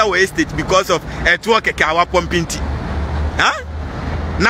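A man talking, over a steady low rumble of road traffic; the talk breaks off about two and a half seconds in, leaving the traffic noise.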